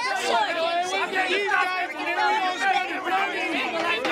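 Several people talking over one another, excited overlapping chatter.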